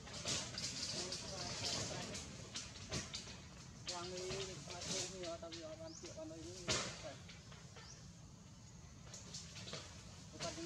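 Faint voices of people talking in the background, with scattered short scratchy noises.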